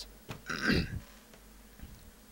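A man coughs once, briefly, about half a second in.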